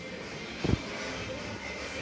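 Steady kitchen background noise, with one soft, low thump a little under a second in.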